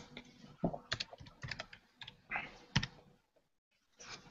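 Computer keyboard typing: a series of irregular, faint keystrokes.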